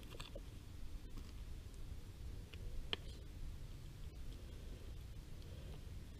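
Faint clicks and handling noise from fingers working at an RC plane's nose while its flight battery is plugged back in, a few separate small clicks over a low steady rumble.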